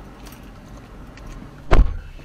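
Low, steady noise inside a stopped car with a few faint clicks, then a single sharp thump near the end.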